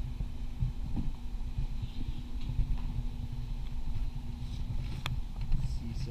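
Low rumbling and irregular thumping of movement right at a body-worn camera's microphone, with a steady hum through the middle and one sharp click about five seconds in.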